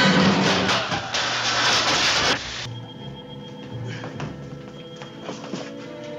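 Dramatic orchestral TV score: a loud, dense noisy surge for the first two seconds or so cuts off abruptly, leaving quieter sustained music.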